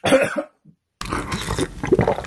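A man coughs out sharply once, after broth squirting from inside a fish cake has scalded his mouth. About a second in, a continuous stretch of softer, busier noise follows.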